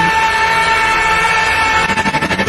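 A single high, piercing tone from a thriller trailer's score, held at a steady pitch with no bass under it. Near the end a rapid ticking begins to build.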